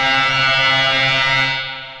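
Empress Zoia synthesizer sounding a physically modelled bowed string, made from filtered noise fed into a Karplus-Strong resonator. It holds one steady low note as a drone, and the upper overtones fade away near the end.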